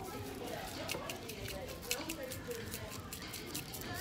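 Salt shaker being shaken over buttered corn on the cob: a run of quick, light, irregular ticks, with faint voices underneath.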